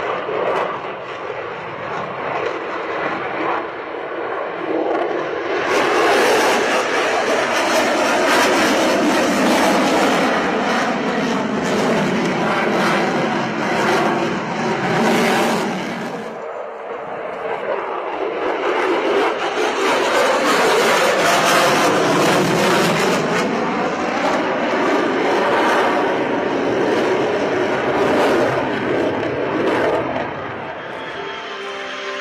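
Jet noise of a Lockheed Martin F-22 Raptor's twin Pratt & Whitney F119 turbofans as it flies a low display pass. The noise swells about six seconds in, dips sharply around the middle, then builds again with the sweeping, phasing whoosh of the jet passing by.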